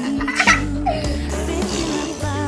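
Background music, with a young child's giggle over it about half a second in.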